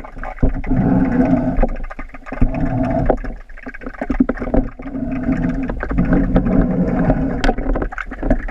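Pool leaf-skimmer net and pole pushed through the water, heard underwater: muffled water movement with an uneven low hum and scattered knocks.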